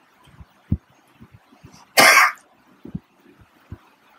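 A person's single short cough about two seconds in, with a few faint low knocks before and after it.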